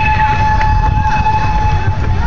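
A steady, high-pitched tone held unbroken, like a warning sounder or whistle at a railway crossing, over a low rumble of wind or handling on the microphone.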